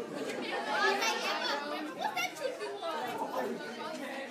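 Indistinct chatter of several students' voices talking at once, with no single speaker clear.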